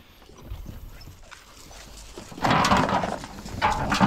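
Pit bull puppies scuffling on a wooden deck, paws tapping on the boards, then a short, harsh burst of puppy growling and snarling about two and a half seconds in, with a brief higher cry near the end.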